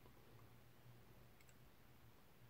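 Near silence: room tone with a faint steady low hum and a couple of faint small ticks about one and a half seconds in.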